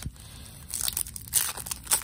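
Foil wrapper of a Topps baseball card pack being torn open and crinkled by hand. After a quiet start, a crackling rip comes in several surges from under a second in.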